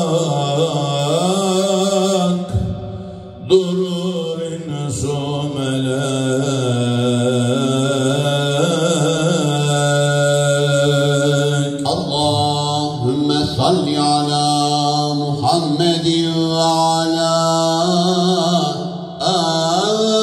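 A man's solo religious chant, sung into a handheld microphone and amplified, in long wavering held notes with ornamented turns. He breaks briefly for breath about three seconds in and again near the end.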